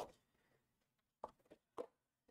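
Faint handling of sheets of cardstock: a light tap right at the start, then a few brief soft paper sounds between about a second and a quarter and a second and three quarters in, with near silence between.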